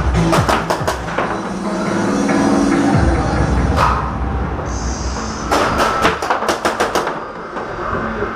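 Music plays over the arena's speakers, its bass dropping out about three seconds in. Over it come two quick runs of sharp pops, one shortly after the start and a longer one past the middle: tagball markers being fired.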